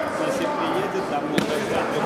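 Several voices of onlookers shouting and calling at once in a large, echoing sports hall, with one sharp smack about one and a half seconds in.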